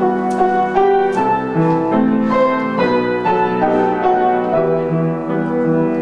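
Grand piano playing the accompaniment of a Korean art song on its own, a run of melody notes over held chords.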